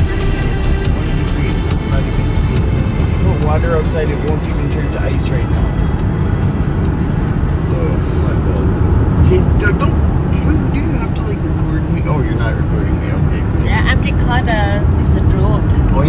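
Car cabin noise while driving: a steady low rumble of tyres and engine on the road, with snatches of voices and some music over it.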